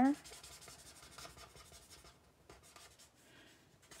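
Felt tip of a Stampin' Blends alcohol marker rubbing faintly across cardstock in short, irregular strokes, blending a light shade over a darker one.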